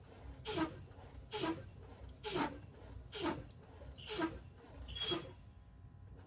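A semi-truck's air brakes being fanned: the brake pedal is pumped about once a second, and each time it lets out a short hiss of exhausting air. It happens six times, bleeding down the air pressure toward the low-air warning point.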